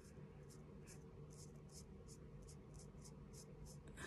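Faint, quick scratching strokes of an eyebrow pencil tip drawn across the skin of the brow, about four strokes a second.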